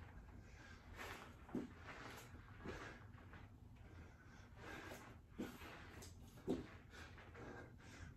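Very quiet, with four faint short sounds in two pairs, each pair about a second apart, from a man doing push-ups with shoulder taps on a rubber mat.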